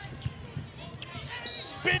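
Basketball being dribbled on a hardwood court, a few short bounces, with a brief high sneaker squeak about a second and a half in.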